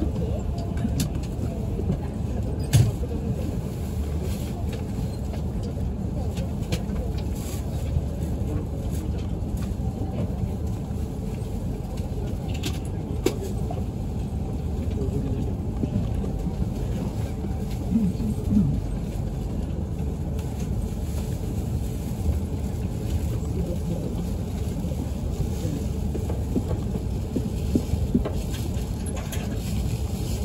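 Steady low rumble and hum inside the passenger cabin of an E5 series Shinkansen, with a few sharp clicks and knocks. The train is standing at a station for most of it.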